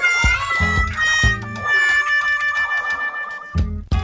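Background music with a bass beat and a long held melodic note.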